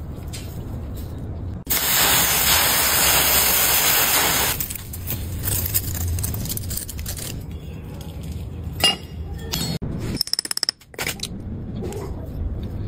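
Loose sand poured over a freshly cast metal piece in a sand mold: a loud, steady hiss for about three seconds, starting about two seconds in. Scattered clicks and a quick run of ticks follow near the end.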